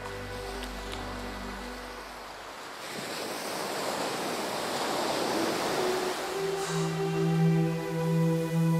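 Small waves breaking and washing up a sandy shore: a steady rushing that swells in about three seconds in. Sustained background music notes play over it, fading out at first and coming back louder near the end.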